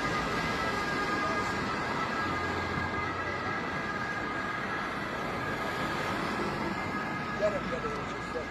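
Roadside traffic noise with a steady high-pitched whine held throughout.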